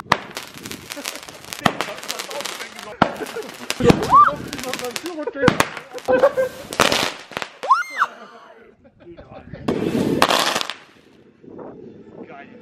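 Consumer New Year's Eve fireworks going off: a ground fountain and aerial effects, with a run of sharp bangs and crackles throughout.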